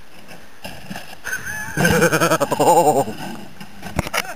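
A person yelling and laughing with a loud, wavering voice for about a second, from a little before the middle, while a snow tube rider crashes. A few sharp knocks near the end.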